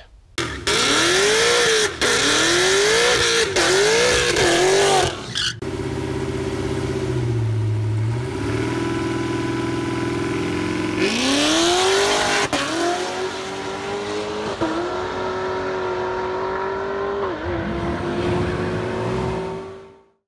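A Camaro SS's 6.2-litre V8 revving hard in repeated rises and falls, then settling to a lower steady note. About eleven seconds in it climbs again and is held at high revs, fading out at the end.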